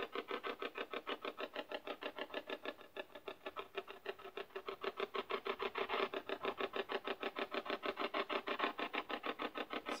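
Handheld spirit box sweeping through radio frequencies: a rapid, even stutter of chopped radio noise, about eight pulses a second, dipping quieter around three to four seconds in.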